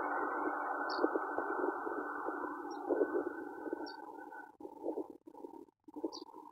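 JR Shikoku 8600 series electric train running away into a tunnel, its rumble with small knocks fading out about two-thirds of the way through. Faint short high chirps repeat about once a second.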